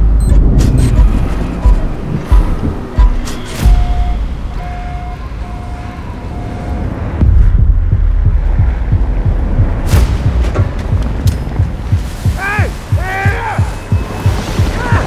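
Dramatic film-trailer score: a deep bass drone with booming hits, and a short steady tone sounded four times in the middle. Near the end a man shouts.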